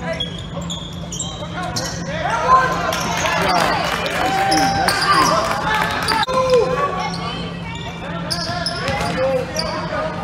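Basketball game in a gym: the ball bouncing on the hardwood court, short high squeaks, and players and spectators calling out, all echoing in the hall.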